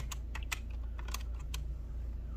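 Plastic keys of a desktop calculator clicking as they are pressed: a quick run of taps in the first half second, then a few more about a second in, over a steady low hum.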